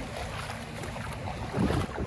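Wind buffeting the microphone, a steady low rumble, over the wash of shallow sea water at the shoreline.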